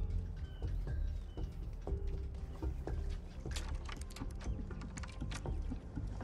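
Quiet TV-drama soundtrack: a low, steady music drone with faint short chirps early on and a scatter of faint sharp clicks in the second half.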